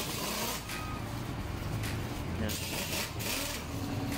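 Background noise with a steady low hum and vehicle noise that swells and fades a few times, with faint distant voices. A steady tone starts near the end.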